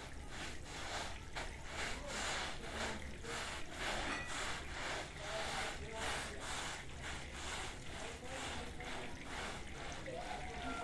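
Long-handled push brush scrubbing a wet, soapy carpet on concrete: a rhythmic swishing rasp of quick back-and-forth strokes, about three a second.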